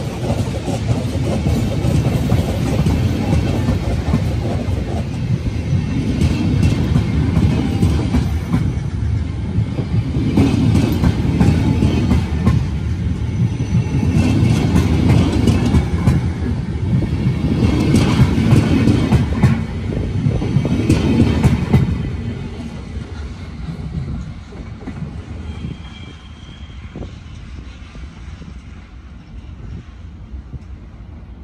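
Snälltåget passenger coaches rolling past close by, a heavy rumble with wheels clicking on the rails. About two-thirds of the way through the sound starts to fade steadily as the train draws away.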